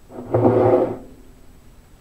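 A person's voice: one short sound of under a second, a little after the start.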